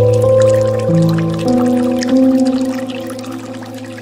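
Slow, soft piano music: held chords that change about a second in and again near one and a half and two seconds, then fade away. Faint trickling and dripping of a bamboo water fountain sit underneath.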